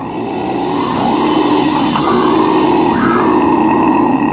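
A long harsh growled scream from a metal vocalist, growing steadily louder, as the lead-in to a breakdown.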